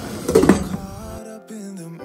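Glass lid set down on a stainless-steel cooking pot with a brief clatter about half a second in. About a second later, background music with held notes comes in.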